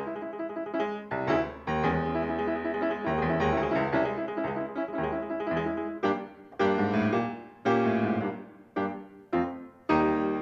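Solo piano accompaniment: a busy run of notes, then a string of separate struck chords, each dying away, in the second half.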